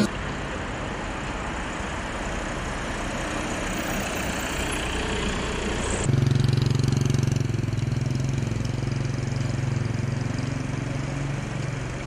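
Street traffic noise, then from about six seconds in a car engine idling with a steady low hum close by.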